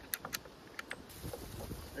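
A few light clicks and knocks in the first second as the .50 airgun and its loading rod are handled on the wooden table after loading. They are followed by low wind rumble on the microphone.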